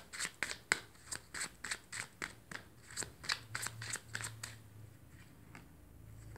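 A tarot deck being shuffled by hand, the cards slapping together in quick, even clicks about four a second; the shuffling stops about four and a half seconds in, leaving a few faint ticks.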